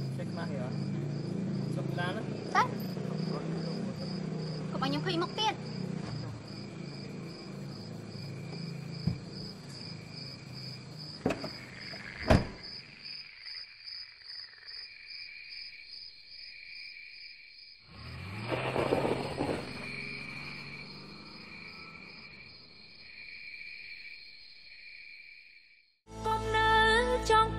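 Crickets chirping in a steady, pulsing chorus, with a low murmur under it in the first half, two sharp knocks (one a few seconds in, one about halfway) and a short noisy rustle later on.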